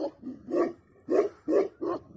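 Tibetan Mastiff barking: a steady run of deep, booming barks, about five in two seconds.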